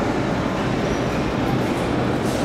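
81-717/714 "Nomernoy" metro train running in the station, a steady rumble and rail noise.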